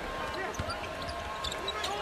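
Basketball being dribbled on a hardwood court during live play, a few separate bounces.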